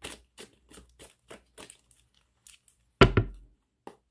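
A deck of playing cards being shuffled and handled, a run of short crisp card snaps, then a single louder thump about three seconds in.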